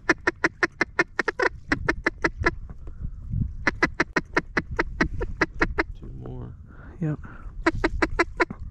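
Duck call blown by a hunter in three runs of rapid, evenly spaced quacks, about five or six a second, calling to a passing group of ducks to bring them into the decoys.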